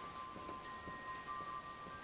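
Faint sustained ringing tones, a few pitches starting at different moments and overlapping, with a couple of brief high pings.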